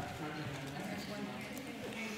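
Indistinct voices of people talking in a large room, not clear enough to make out words.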